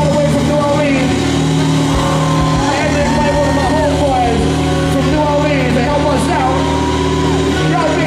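A live funk band plays over steady held bass notes, with a vocalist's voice sliding up and down on top through the stage PA.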